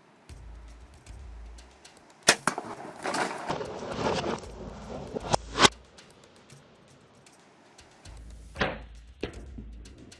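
Bowhunting field sound: low wind rumble on the microphone and scattered sharp clicks and knocks, then about 8.5 s in a sharp crack from the bow shot striking a feeding blue wildebeest, which leaps away.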